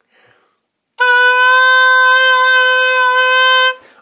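Oboe playing one long, steady concert C (third space of the treble staff), starting about a second in and held for nearly three seconds before stopping.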